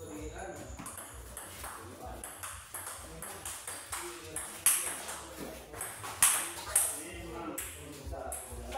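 Table tennis rally: the ball clicking off bats and table in quick alternation, with a few sharper, louder hits in the second half.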